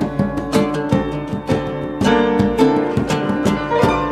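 Live acoustic band playing an instrumental passage: plucked acoustic strings and piano over conga hand drums, with sharp, quick rhythmic attacks several times a second.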